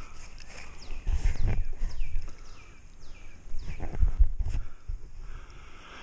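Low bumps and rumbles of handling the rod and landing net close to the camera, twice in loud spells, over a faint steady stream wash, with several short high notes sliding downward from a bird calling.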